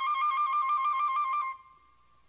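A flute trilling rapidly between two neighbouring high notes. About one and a half seconds in it settles on one note, which drops sharply in loudness and fades away.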